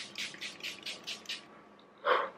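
Pump-mist setting spray (e.l.f. Matte Magic Mist & Set) spritzed onto the face in a quick run of short hisses, about six a second, stopping about a second and a half in.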